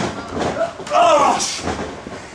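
Spectators shouting and cheering, with one voice calling out briefly about a second in.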